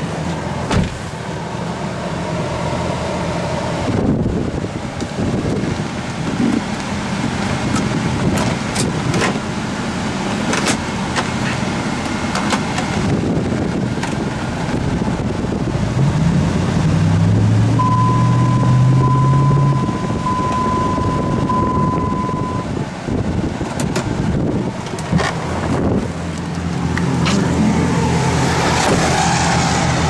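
Dodge Ram 1500's 5.7-litre HEMI V8 running at a steady idle, its note stepping up briefly a little past the middle. Over it, a pulsing electronic chime from the truck sounds for a few seconds, and there are scattered handling knocks and clicks.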